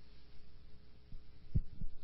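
Two dull low thumps, about a quarter second apart near the end, over a faint steady hum.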